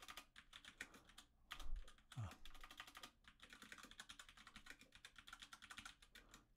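Faint typing on a computer keyboard: a quick, irregular run of keystrokes as a line of text is typed.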